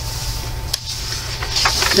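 A page of a coloring book made of thin copy paper being turned by hand: a soft tick a little before the middle, then a papery rustle near the end. A steady low hum runs underneath.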